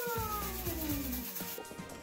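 A person's long, drawn-out cheering shout held in one breath, its pitch falling steadily until it fades out about a second and a half in, over faint background music.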